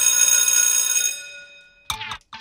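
A struck, bell-like metallic tone ringing out and fading away over about a second and a half. A sharp click comes near the end.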